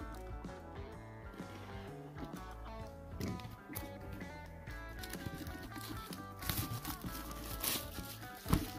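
Background music with a steady bass line. Near the end come a few brief crinkles of plastic shrink wrap as it is pulled off a card box.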